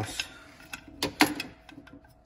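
A few light metallic clicks from a hand screwdriver on the stator screws, then a sharper clink a little over a second in as the screwdriver is set down on a perforated metal bench.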